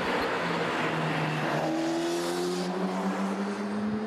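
A car driving past, with road and tyre noise and an engine note that slowly rises in pitch; the tyre noise eases off a little past halfway while the engine hum carries on.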